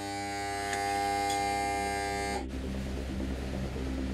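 Steady electric buzz of a diesel fuel pump at a boat fuelling dock, cutting off abruptly about two and a half seconds in; a lower steady hum follows.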